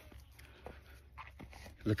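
Mostly quiet, with a few faint soft crunches and rustles around the middle; a man's voice says "look" right at the end.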